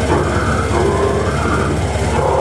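Slam death metal played loud through a club PA: heavily distorted electric guitar over fast drums, with guttural growled vocals.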